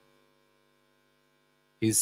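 A faint, steady electrical hum of several low tones, with a man's voice starting near the end.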